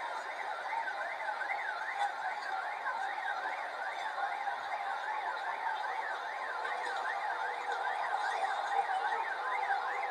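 An electronic siren warbling rapidly and steadily, its pitch sweeping up and down about three times a second.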